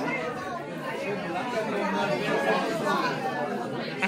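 Indistinct chatter of a group of people talking at once, with overlapping voices and no one voice standing out.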